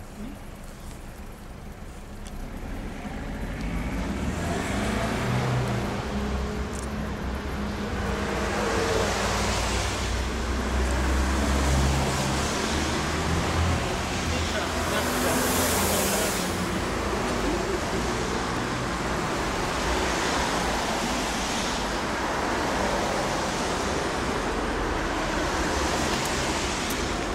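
Road traffic going by in the street: a steady noise of car engines and tyres that swells over the first few seconds and stays up, with a hiss of a passing car near the middle.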